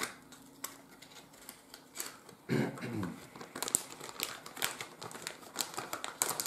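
Packaging of a scent sample crinkling and rustling in the hands as it is handled and opened, in irregular bursts that grow busier in the second half. A short hum of voice breaks in about halfway through.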